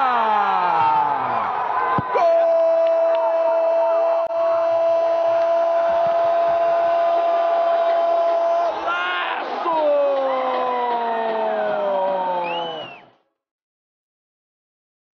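A Brazilian TV football commentator's goal cry: one note held steady for about six seconds, then shouting that falls in pitch. The sound cuts off abruptly near the end.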